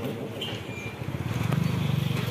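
A motorcycle engine running, growing louder about halfway through.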